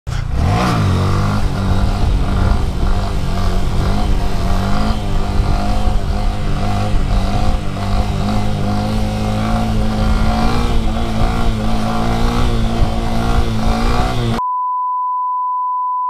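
A 2018 Honda Grom's 125cc single-cylinder engine revs up and then holds at a steady, high pitch under the rider. Near the end it cuts off suddenly to a steady test-tone beep.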